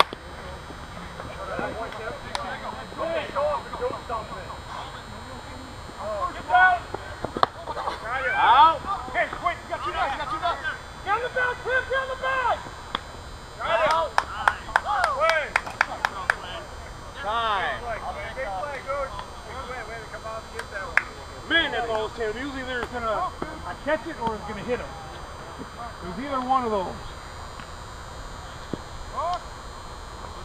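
Players and spectators shouting and calling out across an outdoor ball field, with a quick run of sharp claps or clicks about halfway through.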